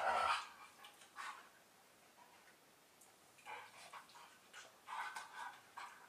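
Two dogs, one a German Shepherd, playing and nuzzling on a couch, with intermittent dog sounds: a short, louder one right at the start, then softer ones about three and a half and five seconds in.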